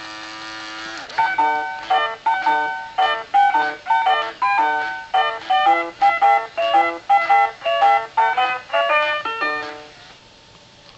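Fisher-Price Magic Touch N Crawl Winnie the Pooh toy playing its electronic tune through its small speaker: a held tone for about a second, then a bright melody of short plucked-sounding notes that stops near the end.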